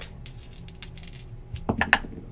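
Small plastic dice rattling and clicking against each other, shaken in a cupped hand before a roll. There is a quick run of clicks in the first second and a louder cluster near the end.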